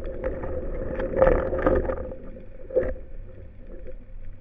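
Muffled underwater noise picked up by a speargun-mounted camera: water movement with scattered knocks and rustles of the diver's gear, loudest a little over a second in and again briefly near three seconds, over a faint steady hum.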